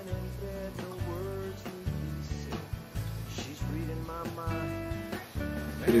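Background music with guitar and a steady bass pattern.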